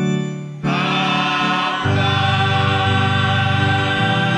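Church hymn sung by voices over organ accompaniment, held chords changing about half a second in and again near two seconds.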